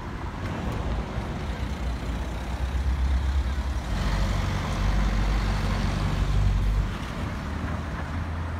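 Road traffic passing close by: engines and tyres of cars and a pickup, with a louder low engine rumble from about four to seven seconds in as a vehicle goes past.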